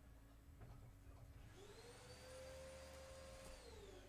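Near silence, with a faint whine that rises in pitch about a second and a half in, holds steady, then falls away near the end.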